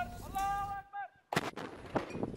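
A towed field gun firing, a single sudden blast about one and a half seconds in with a short echoing tail. It is preceded by a man's drawn-out shout, and a second sharp bang comes near the end.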